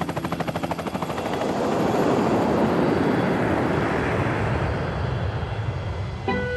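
Helicopter rotor chopping rapidly, overtaken by the rising rush of a jet airliner that swells about two seconds in and slowly eases off.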